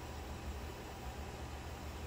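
Steady low hum and hiss of background room tone, with no distinct event.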